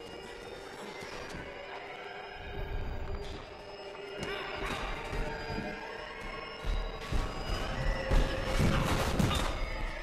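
Film score with sustained tones, over which a run of heavy thuds begins about two-thirds of the way in: the sound-effect track of a body tumbling down concrete stairs during a fight. A few lighter knocks come earlier.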